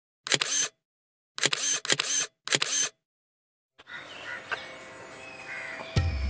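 Four camera shutter clicks over silence, the second and third almost back to back. From about four seconds in there is faint outdoor background sound.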